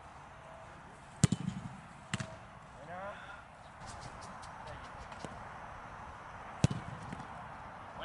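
A football being struck hard during goalkeeper shooting drills on artificial turf: three sharp thuds, two close together about a second in and a second later, and a third near the end.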